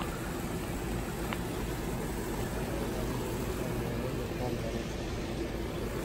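Steady outdoor background noise: an even low rumble with a hiss, unchanging throughout.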